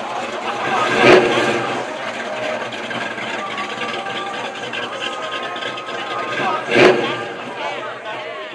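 Engine of a classic Ford Mustang fastback running as the car pulls slowly away, with two short louder moments, about a second in and near the end, over the chatter of a crowd.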